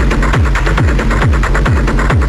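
Industrial acid techno track with a steady kick drum, each kick a short falling pitch, about two and a half beats a second, under busy, evenly ticking percussion in the highs.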